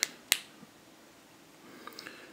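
A single sharp click about a third of a second in, the button of a handheld UV resin-curing light being pressed on, with a couple of faint ticks near the end.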